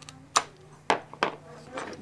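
A sheet of glass being worked with a glass cutter: three sharp clicks and snaps as the scored piece breaks along its cut line.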